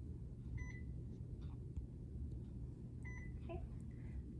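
Infusion pump beeping: two short, high electronic beeps about two and a half seconds apart, over a low steady room hum.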